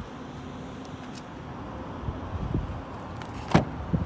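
Wind buffeting the microphone in a low, gusty rumble, then a sharp click about three and a half seconds in as the 2020 Toyota Tundra TRD Pro's rear door latch is pulled open, followed by soft thumps of the door swinging.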